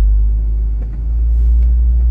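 Steady low rumble of a car's cabin, with nothing else above it.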